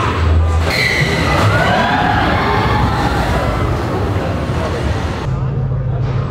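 Indistinct voices over a steady low hum, with faint music underneath; the higher sounds fall away about five seconds in.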